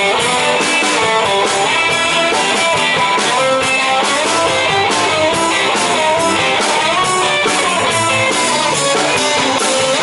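A live rock band playing loudly. An electric guitar plays moving note lines over electric bass and a drum kit keeping a steady beat.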